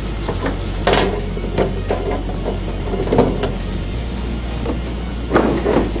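The sheet-steel cover of a desktop PC case being slid off, with a few metallic clunks and scrapes, over background music.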